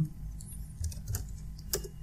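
Typing on a computer keyboard: irregular keystroke clicks, a few sharper than the rest, over a steady low hum.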